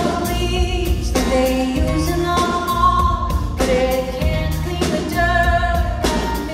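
Live music: a woman singing while strumming an acoustic guitar, with a steady bass line underneath.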